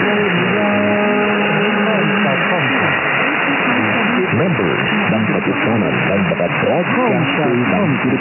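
Weak distant mediumwave broadcast of DWET on 1179 kHz, tuned in upper sideband with a narrow 2.7 kHz bandwidth, under steady static and interference. A held musical chord fades out about three seconds in. An announcer's voice follows, blurred by noise and fading.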